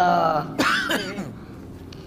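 A man's drawn-out vocal sound in the first second or so, rising and falling and rough in texture, then fading to a low background.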